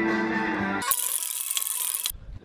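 Background music with held chords stops just under a second in. An aerosol can of clear timber varnish then sprays with a steady, bright hiss for just over a second, and the hiss is cut off abruptly.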